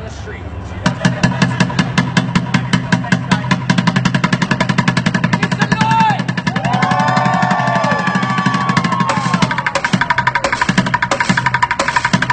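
Bucket drumming: drumsticks beating fast on upturned plastic buckets. It starts about a second in and runs on as a rapid, even stream of strokes. Voices call out briefly in the middle.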